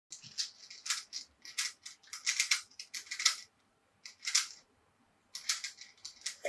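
Rubik's cube being twisted by hand: a run of quick, irregular plastic clicks and scrapes as its layers turn, with a couple of short pauses.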